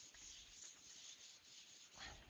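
Faint rubbing of a handheld eraser wiping marker off a whiteboard, in a series of back-and-forth strokes.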